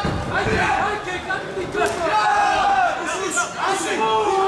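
Ringside crowd and cornermen shouting and cheering during a kickboxing bout, several voices calling over one another.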